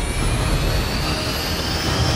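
Jet engines of a crippled C-17 military transport running in flight: a dense rush over a deep rumble, with a high whine rising slowly in pitch.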